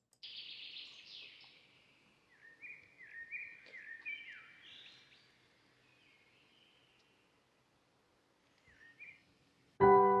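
Birds chirping: a run of short, downward-sliding whistled calls for about five seconds, then one more brief call. Piano music comes in louder just before the end.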